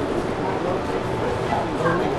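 Indistinct background voices, several people talking continuously with no words clearly made out.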